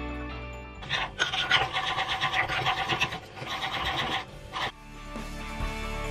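Metal spoon beating a sugar, instant coffee and hot-water mixture by hand in a ceramic bowl: a quick, rhythmic scraping from about a second in until nearly five seconds, with a brief break midway. Background music plays throughout.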